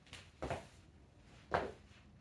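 Two jump lunges, one on each leg: two short landing thuds of sneakered feet on a rubber-matted floor, about a second apart.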